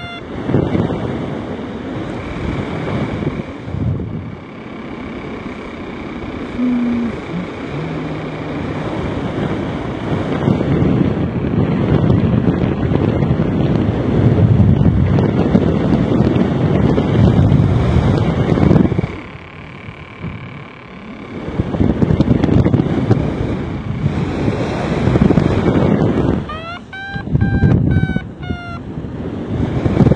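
Wind buffeting the microphone in flight, rising and falling in gusts with a brief lull past the middle. Near the end a short run of electronic beeps sounds.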